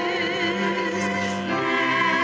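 Voices singing a hymn in sustained, vibrato-laden chords, moving to a new chord about a second and a half in.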